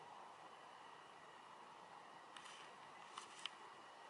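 Near silence: a faint steady hiss, broken by a few short sharp clicks in the second half, the loudest about three and a half seconds in.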